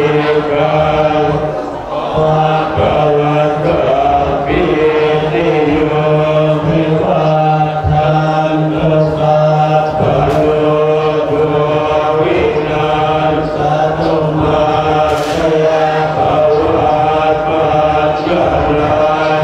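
A group of Thai Buddhist monks chanting Pali verses in unison, a continuous, steady group recitation picked up through a microphone and amplified.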